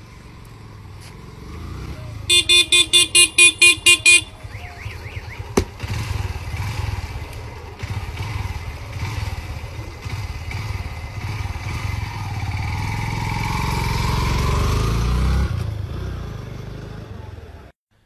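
A vehicle horn beeping rapidly, about ten short beeps in two seconds, then a motor vehicle engine running, growing louder before it fades near the end.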